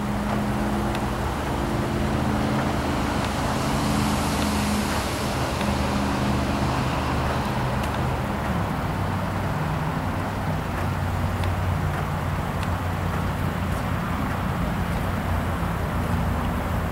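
Pickup truck engine idling, a steady low hum with a few tones that shift slightly in pitch, over outdoor background noise.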